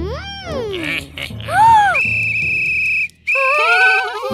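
Wordless cartoon voice sounds over children's background music: a gliding rise-and-fall "ooh" in the first second and a shorter one a little later, then a long steady high tone, broken briefly about three seconds in, with a wavering giggle under it near the end.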